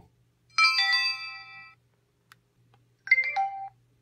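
PenFriend 2 talking label pen's speaker playing two electronic chimes as its record button is pressed to start a voice label: a bright, ringing chime of several tones about half a second in, lasting about a second, then a shorter one about three seconds in that steps down in pitch at its end.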